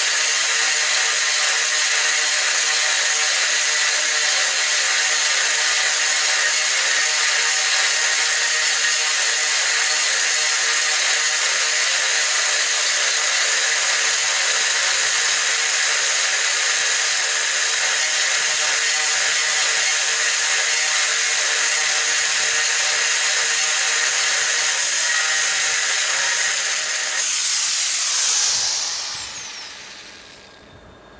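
Angle grinder fitted with an 8 mm diamond core bit, running steadily as it dry-drills hard ceramic tile. Near the end it is switched off, and its pitch falls as it spins down.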